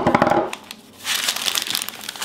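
Parchment-paper piping cone crinkling as it is handled and filled with icing, a dense run of fine crackles in the second half. A short pitched sound at the very start.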